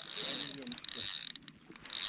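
A spinning fishing reel clicking quietly as it is worked, with a run of fine rapid clicks about a second and a half in, under faint distant voices.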